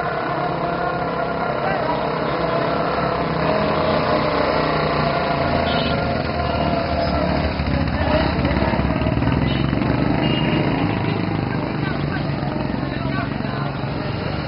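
A group of motorcycles riding slowly past, their engines running together, mixed with the chatter and shouts of a large crowd. The sound stays steady throughout.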